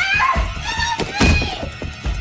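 Movie soundtrack: two heavy thuds about a second in, with a woman's frightened gasps and whimpers over tense music.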